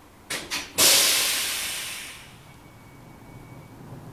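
Inside an LVS-97K articulated tram: two short clicks, then a loud hiss of released air that fades away over about a second and a half, followed by a faint thin tone over a low running rumble.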